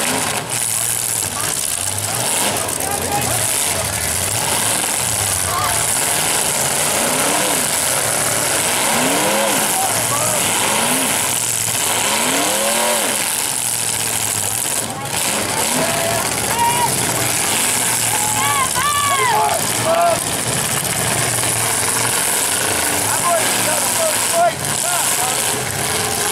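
Demolition derby car engines revving hard and easing off again and again, the pitch rising and falling in repeated sweeps, over a continuous din of engine noise.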